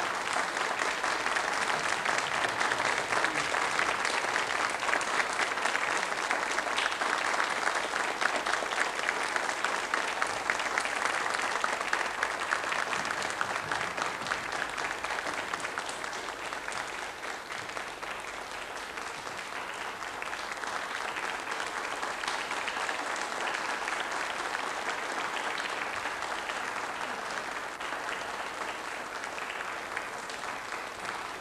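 Studio audience applauding, a dense, steady clapping that eases slightly about halfway through.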